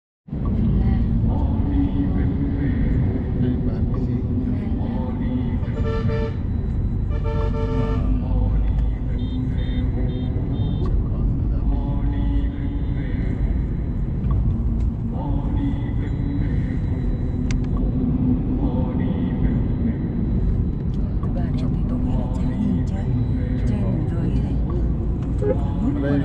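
Car driving along a road, heard from inside the cabin: steady engine and tyre rumble, with a vehicle horn sounding twice, briefly at about six seconds and again at about seven and a half seconds.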